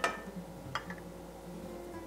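Soft background music with a few held notes, with one faint click partway through.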